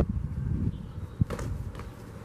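Boxing gloves landing in sparring: a dull thump a little over a second in, followed by a couple of sharper slaps, over a low rumble of wind on the microphone.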